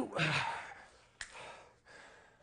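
A man's heavy sigh of breath out after a hard side-plank hold, with a short voiced tail, fading over under a second. A sharp click comes a little after a second in, followed by a softer breath.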